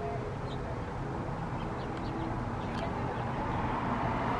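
Outdoor background: a steady low rumble with a few faint, short bird chirps scattered through it.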